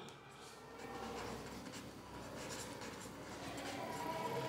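Ballpoint pen writing on paper: faint, continuous scratching of handwritten strokes.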